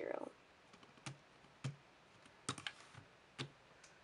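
About seven faint, sharp plastic taps and clicks at irregular spacing, from hands handling a Speed Stacks stackmat timer.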